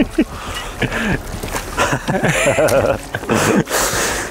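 Men laughing and exclaiming in several short bursts about a second apart, without clear words.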